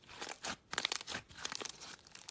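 Yellow butter slime being squeezed and kneaded by hand, giving a dense run of crackles, clicks and small pops in several quick clusters.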